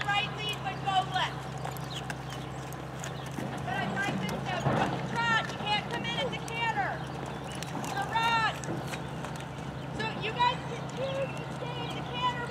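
A horse trotting on the soft dirt of a riding arena, its hoofbeats coming as a run of light clip-clops, over a steady low hum.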